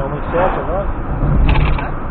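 Car driving on a highway heard from inside the cabin: a steady low road and engine rumble, with short squeaks repeating irregularly and a brief rattle about one and a half seconds in.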